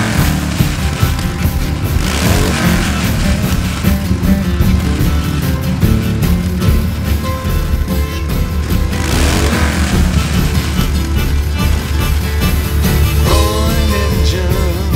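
Instrumental passage of a band's song about Harley-Davidson motorcycles, played without vocals. Sweeping sounds rise and fall in pitch three times over the music.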